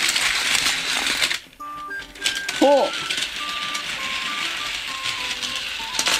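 Unpowered plastic Daiso Petit Densha Doctor Yellow toy train rolling by gravity along a sloping plastic toy track, a steady rattling hiss of its wheels. The sound breaks off briefly about a second and a half in, then carries on.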